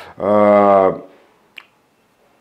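A man's drawn-out hesitation sound, a flat "eh" held for under a second, then quiet broken by one short mouth click.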